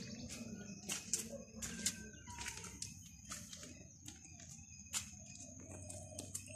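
Outdoor ambience with birds chirping here and there, a faint steady high-pitched hum, and scattered sharp clicks and taps throughout.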